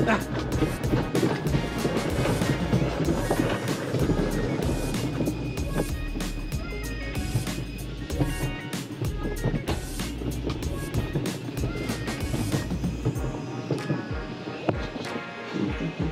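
Mountain coaster cart rolling fast along its steel tube track, its wheels rumbling and clattering, with wind buffeting the microphone. Background music plays over it.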